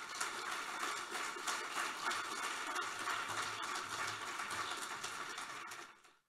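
Audience applauding: a steady, dense clatter of many hands clapping that falls away abruptly near the end.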